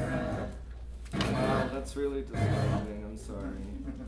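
A voice with some music underneath, played back from a video through the room's speakers.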